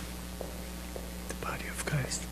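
Quiet, whispery speech in the second half over a steady low hum, with a few faint clicks before it.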